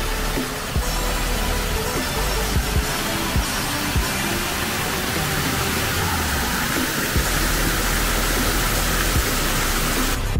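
Water splashing down a stepped stone cascade fountain, a steady rushing that grows louder in the second half, under background pop music.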